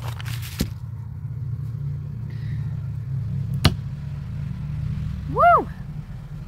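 Steady low rumble of side-by-side off-road vehicle engines going past, with a loud sharp click a little past halfway and a fainter one early on.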